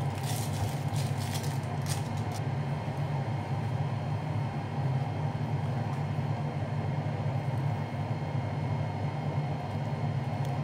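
A steady low hum, with light crinkling of the plastic wrapper as it is peeled off a crab stick in roughly the first two seconds.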